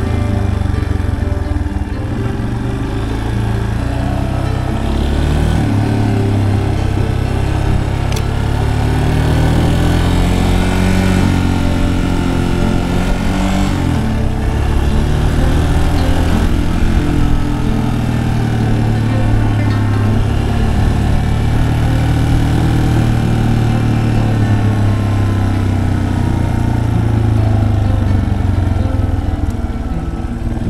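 Yamaha Serow 250's single-cylinder four-stroke engine running under way on a ride, its revs rising and falling through the gears and bends.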